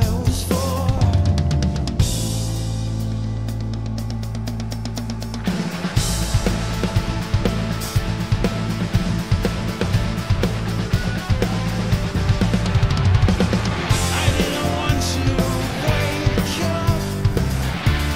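Progressive rock song playing, led by a busy drum kit. A held low bass note with evenly spaced cymbal taps fills the first few seconds, then dense kick, snare and cymbal drumming takes over about six seconds in, getting busier near the end.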